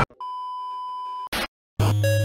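A steady electronic beep, one held tone lasting about a second. A short burst of noise and a brief silence follow, and music with a deep bass note starts near the end.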